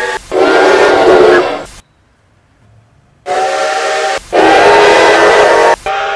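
Canadian National No. 3254's chime steam whistle sounding a steady multi-note chord in long blasts. The blasts are split by brief breaks, with a pause of about a second and a half in the middle, and the second pair is louder in its later blast.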